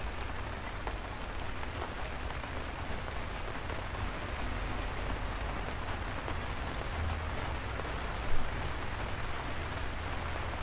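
Steady rain falling on a forest floor, with a low rumble beneath it and one short, louder knock late on.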